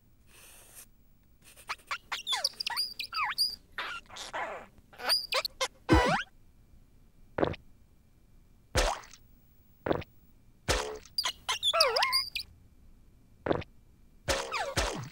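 Cartoon sound effects for drawing on a computer paint program: a string of short chirps and sliding electronic tones, with a long falling swoop about six seconds in.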